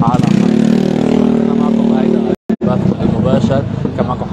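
A motor vehicle engine runs steadily close by on a busy street, with voices around it. The sound drops out completely twice in quick succession about two and a half seconds in, after which street voices continue.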